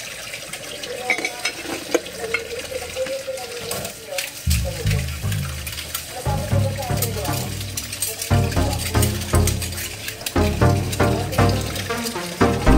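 Water running at a sink with light clinks of dishes being handled. Background music plays over it, its bass and chords coming in about four seconds in.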